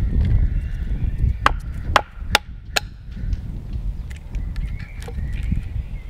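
Wooden baton striking the spine of a knife four times in quick succession, about half a second apart, driving the blade down to split a section off a sweet chestnut block at a stop cut.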